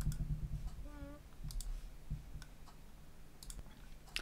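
Faint, scattered clicks of a computer mouse picking a file, about eight of them at uneven intervals, over a low steady hum.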